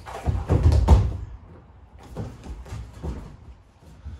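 Bodies thudding onto a foam wrestling mat as a wrestler is driven down in a takedown: a heavy thump within the first second, followed by a few lighter knocks and scuffs on the mat.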